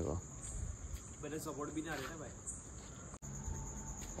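Crickets chirring steadily in a high, even tone, with faint voices partway through.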